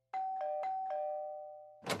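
Doorbell chiming ding-dong twice: four quick strikes alternating between a higher and a lower tone, the tones ringing on together until a voice cuts in at the very end.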